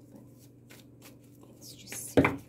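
Faint rustling and light clicks of tarot cards being handled by hand, with a brushing slide of a card that grows louder near the end.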